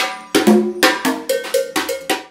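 Conga drums played in a steady rhythm, about four sharp strokes a second, each stroke ringing briefly with a pitched tone.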